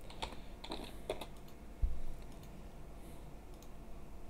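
Keystrokes on a computer keyboard, a short run of taps in the first second or so as a password is typed. A single dull, louder thump follows a little under two seconds in.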